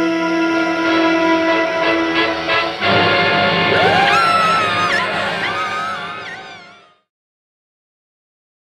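Dramatic horror-film score with held notes, breaking into a sudden louder sting about three seconds in. A man and a woman scream over it, and everything fades out near the end.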